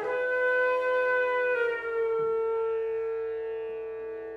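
Flute holding one long low note rich in overtones, stepping up slightly in pitch about one and a half seconds in, then sustained and slowly fading near the end.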